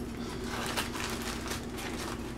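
Black plastic poly mailer bag crinkling and rustling as hands pull it open, in small irregular crackles.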